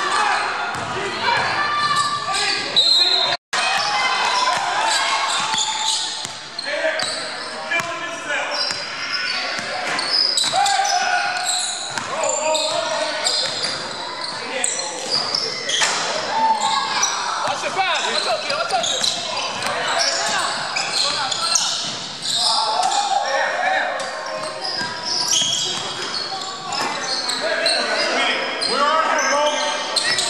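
A basketball game in an echoing gym: the ball bouncing on the hardwood floor amid players' indistinct voices.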